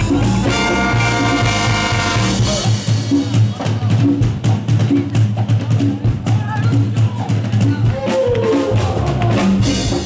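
Live ska band music with a brass section. For the first couple of seconds the horns hold a note over bass and drums. Then comes a drum break with the bass dropping out, and the full band comes back in near the end.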